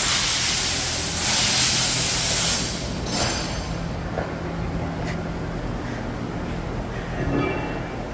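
High-pressure washer spray hissing as a tyre is washed, stopping about two and a half seconds in, over a steady low machine hum.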